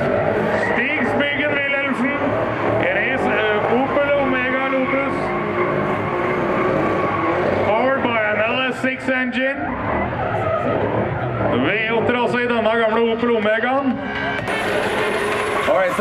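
Drift cars sliding sideways with tyres squealing and engines revving hard. The pitch wavers up and down, with the strongest bursts about halfway through and again near the end.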